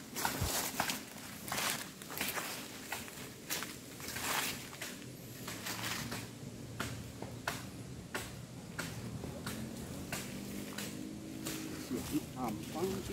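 Footsteps on ground covered in dry leaves and soil, an irregular run of short scuffing steps, about one to two a second.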